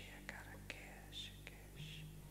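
Faint whispering in short breathy bits, with a few small clicks over a low steady hum.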